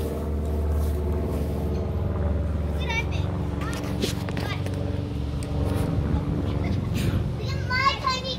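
A motor running steadily at one pitch, a low hum throughout, with faint children's voices and a few small clicks over it.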